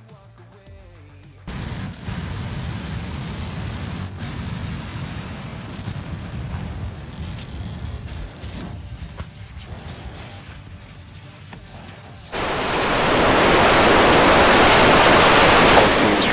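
Deep rumbling roar of Starship prototype explosions, starting suddenly about a second and a half in. A much louder rocket engine roar from a Starship prototype lifting off begins abruptly about twelve seconds in.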